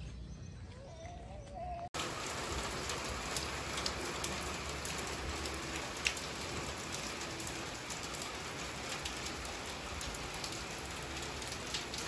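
Steady rain falling, with scattered single drops ticking; it begins abruptly about two seconds in.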